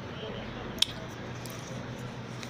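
Mouth sounds of chewing a mouthful of cornstarch, with one sharp crunch about a second in and a few fainter ticks, over a low steady hum.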